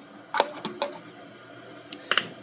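A few short light knocks and clicks in the first second as a plastic tub is slid and set down on a wooden floor under the washer's pump-filter door, followed by quiet room tone.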